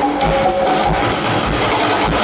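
A band playing live: a steady drum beat with congas struck by hand, under sustained pitched notes.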